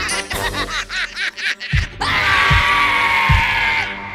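Cartoon sound track: high-pitched cartoon voices snickering and laughing over music, then about two seconds in a loud held musical sting starts, with three heavy low thuds under it, and cuts off just before the end.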